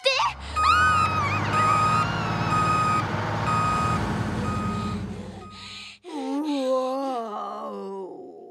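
Cartoon truck reversing: a short high electronic beep repeating about twice a second over a low engine rumble, stopping about five and a half seconds in. Then a drawn-out wavering groan from a cartoon voice.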